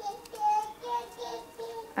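A child's high voice singing a short, wandering tune off to the side, a few held notes that step up and down.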